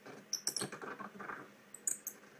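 Television sound breaking up from a poor digital Freeview signal: short high chirps and clicks about half a second in and again near the end, with garbled fragments between them.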